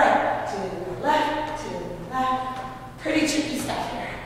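A woman's voice in four drawn-out, sing-song phrases with long held notes, like counting or calling out dance steps.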